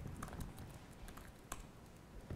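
Faint, sparse keystrokes on a computer keyboard: a few scattered clicks, the sharpest about a second and a half in, as a short command is typed.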